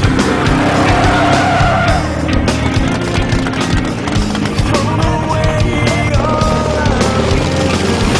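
Rock music with a steady beat, mixed with the engines of off-road race vehicles and a couple of high gliding tyre squeals.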